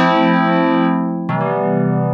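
FM synth pad from Ableton Live's Operator, four operators layered into a harmonically dense tone and tamed with a filter, playing sustained chords. A new, lower chord comes in about a second and a half in, and its upper overtones fade as it holds.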